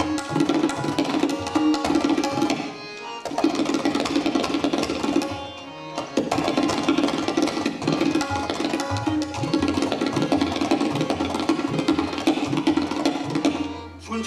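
Tabla solo: fast runs of strokes on the ringing, tuned treble drum, mixed with deep open strokes on the bass drum whose pitch slides upward. There are two short breaks, about three and six seconds in.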